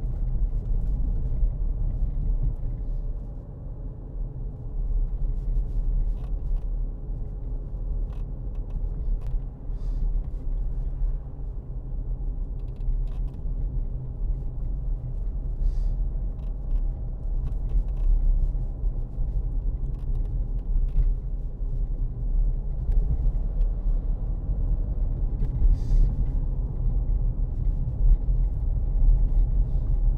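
Interior noise of a Porsche Cayenne 3.0 V6 diesel on the move: a steady low engine and road rumble with a faint running hum and a few faint clicks.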